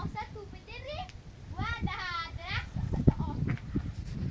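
Indistinct voices, among them a high, child-like call that rises and falls near the middle, with scattered low knocks.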